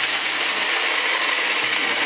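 Magic Bullet personal blender grinding whole coffee beans: a loud, steady grinding.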